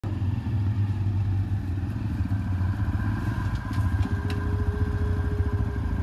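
Motorcycle engines running, a loud, low, rough engine sound that holds steady throughout.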